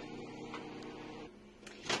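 Microwave oven running with a steady hum while it warms milk; the hum stops about a second in, and a sharp click follows near the end.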